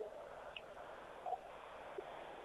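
Faint steady background noise with a couple of tiny blips, heard in a gap in the radio commentary.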